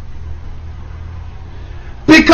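Steady low background hum with a faint hiss, with no other distinct event.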